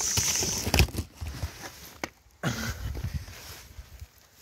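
Cardboard box being opened by hand. A high scraping hiss stops early, a knock comes about a second in, and then there is quieter rustling and scraping of the cardboard flaps.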